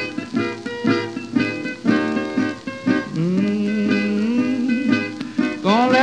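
Acoustic guitar break in a 1934 country blues recording: a run of plucked notes between sung verses, heard with the narrow, dull sound of an old 78 rpm record.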